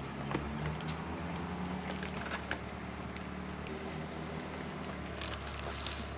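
Faint clicks and rustles of small screws and a plastic bag being handled, over a steady low hum. The clicks come a few at a time, more of them near the end.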